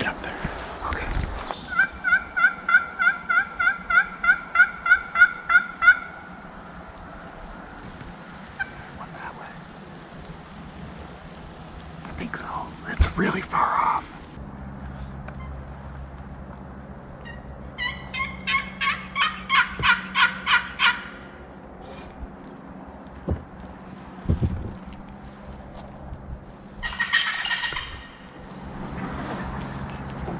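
Wild turkey calling: a long run of evenly spaced yelps, about four a second, early on. A second, quicker run of calls comes in the middle, and a short rattling gobble sounds near the end.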